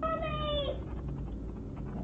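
A young girl's short, high-pitched vocal call, held for under a second with a slight fall at the end, heard through the Ring camera's microphone over a steady low electrical hum.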